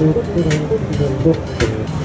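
Fretless six-string F Bass electric bass played through a Markbass amplifier in a fast run of short melodic notes, with sharp percussive hits about half a second in and near the end.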